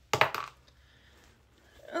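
Small metal padlock and key clinking together as they are set down: a quick run of sharp clinks in the first half second.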